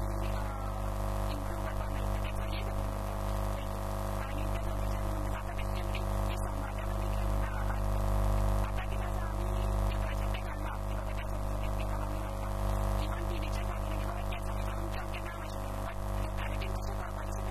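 Steady electrical mains hum with many overtones runs loud and unchanging, drowning out everything else; faint, wavering voice traces lie underneath it.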